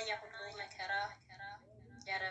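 A woman speaking, pausing briefly near the end.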